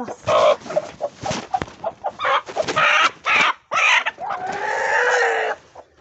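Chickens squawking and clucking loudly in a rapid series of harsh calls, with one longer drawn-out call near the end.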